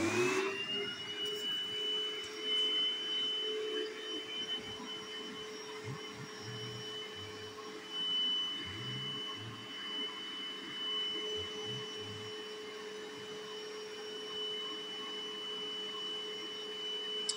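Bissell SpotClean portable carpet cleaner's motor switching on and spinning up to a steady high whine, its suction running as the hand tool is worked over a carpeted stair.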